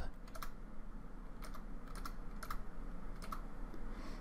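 A handful of light computer keyboard key presses, some in quick pairs, as a spacing value is typed in.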